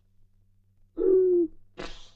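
A sleeping man snoring in a comic way: a drawn-out hooting tone about a second in, then a hissing breath out near the end.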